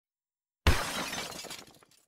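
Logo intro sound effect: a sudden crash about two-thirds of a second in, its noisy, shattering tail fading out over about a second.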